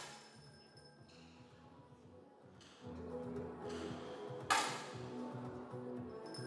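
Soft background music with two sharp cracks of 10 m air rifle shots. One comes right at the start, and a louder one about four and a half seconds in, each fading off quickly.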